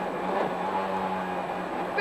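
Rally car engine heard from inside the cabin during a stage run, holding a fairly steady note.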